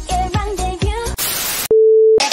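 Pop dance music with a wavering melody, cut off about a second in by a short burst of TV static hiss. Near the end comes a loud, steady single-pitch test-card beep.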